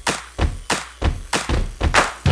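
Percussive hits of an animated logo intro sting: a quick run of about six heavy thuds, each with a short fading tail.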